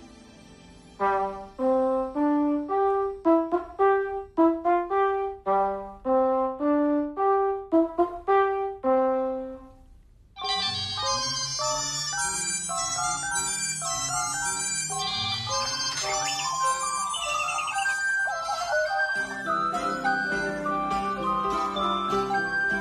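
A French horn plays a short melody of separate notes for about nine seconds. After a brief pause, a dense jumble of sound starts suddenly: the same tune comes from many things at once, including high electronic ringtone-like tones from mobile phones, with piano notes joining near the end.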